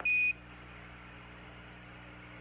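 Quindar tone on Apollo air-to-ground radio: one short, steady, high beep of about a quarter second that marks the end of a Mission Control transmission. After it, only faint steady radio hiss and hum.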